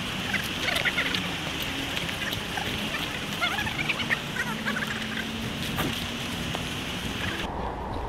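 Outdoor woodland background noise with scattered short bird chirps. Near the end it cuts abruptly to a duller, quieter background.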